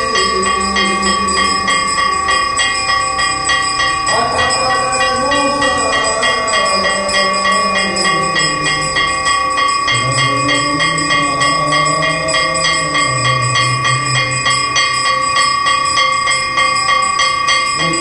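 Temple bells rung rapidly and without pause through an aarti. Voices sing long, slow notes of the hymn underneath.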